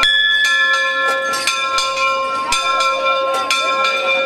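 Church bells ringing, several bells of different pitch struck over and over so their tones keep sounding, with people's voices in the crowd underneath.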